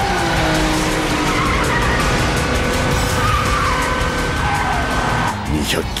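Sports car engine running hard with its pitch shifting, and tyres squealing, over background music.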